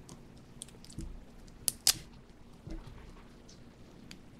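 A few sharp plastic clicks and snaps as the screw cap of a Dunkin' iced coffee bottle is twisted open, the two loudest close together a little under two seconds in.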